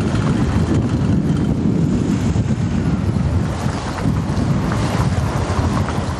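Cars in a motorcade driving past, their engine and tyre noise mixed with heavy wind buffeting on the microphone, a steady rumble throughout.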